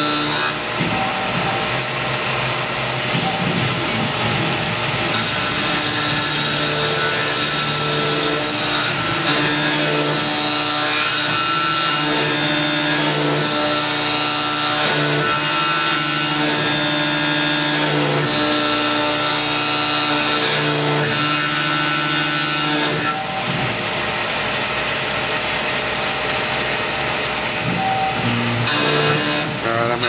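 Tormach PCNC 1100 CNC mill cutting 6061 aluminium with an end mill, with coolant spraying and an air blast on the cutter: steady machining noise. Pitched tones come and go as the machine moves, and several of them drop away about two thirds of the way through.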